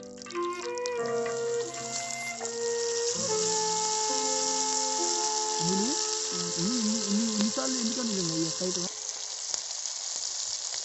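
Hot oil sizzling steadily as a whole fish fries in a shallow pan, with background music of held notes over it that stops about nine seconds in.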